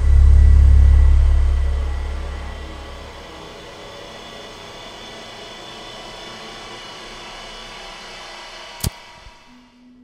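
Horror-film sound design: a sudden loud, deep bass boom that dies away over about three seconds, followed by a steady eerie drone with faint high tones. Near the end a sharp click sounds and the drone cuts off abruptly.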